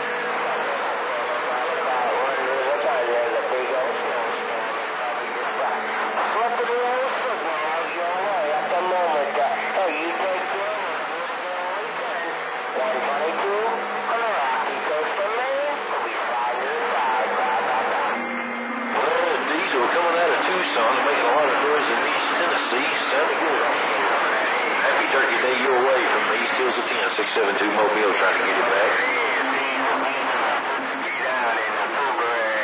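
CB radio receiving long-distance skip on channel 28: overlapping, unintelligible voices coming through fading and noise, with faint steady whistles under them. There is a brief break about eighteen seconds in, after which the signal comes in louder.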